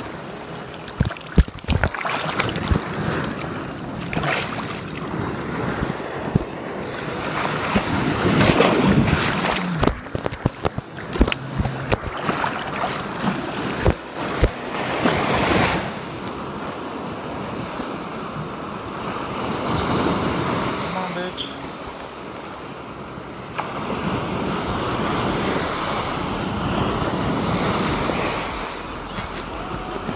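Gulf surf washing in and out on the beach, swelling and fading, with wind buffeting the phone's microphone. Several sharp knocks from the phone being handled come in the first half.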